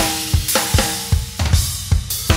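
Acoustic drum kit played with sticks: a steady groove of bass drum and snare hits, about two and a half a second, with cymbals ringing over them.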